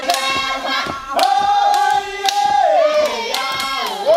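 A group of women singing a Tanna custom dance song in long held notes that step up and down in pitch, with sharp hand claps running through the singing.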